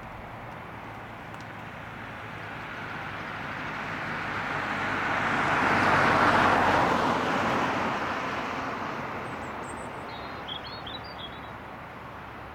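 A car drives past close by. Its tyre and engine noise swells to a peak about halfway, then fades away. A small bird chirps a few times near the end.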